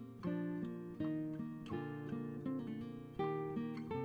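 Background music: acoustic guitar playing a steady run of picked notes and chords.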